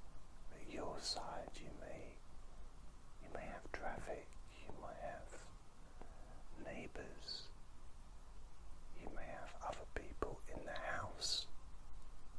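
A man whispering, in four short groups of phrases with brief pauses between them.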